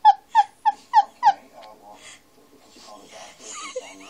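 Young cat giving a quick run of short, high meows, about three a second, each falling in pitch; the calls stop about a second and a half in.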